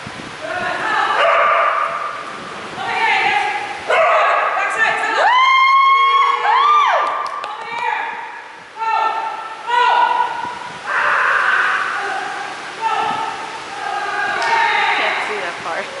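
Small dog barking and yipping repeatedly during an agility run, mixed with a person's excited calls. About five to seven seconds in there are a few drawn-out calls that rise and fall in pitch.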